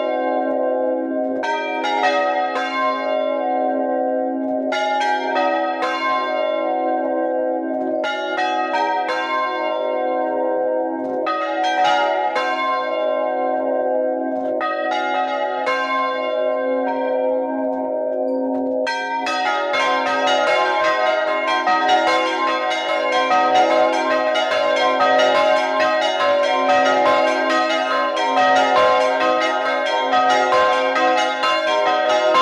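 A concerto of four small hand-rung bronze church bells, tuned in a minor key and hung in the Bolognese style, ringing a Bolognese "doppio". For about the first 19 seconds the bells sound in separate rounds of strikes in scale order, a round every few seconds, as each swing is thrown. After that the ringing turns continuous and dense, with all the bells overlapping.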